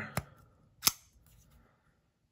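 A Rough Ryder RR1826 frame-lock flipper knife being flicked open: a faint click near the start, then a single sharp snap just under a second in as the blade swings out and locks.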